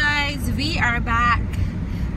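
A woman's voice, drawn out and wavering in pitch in two stretches, over the steady low rumble of a moving car's cabin.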